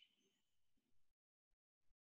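Near silence: the call audio drops out almost entirely, with only a couple of tiny faint ticks.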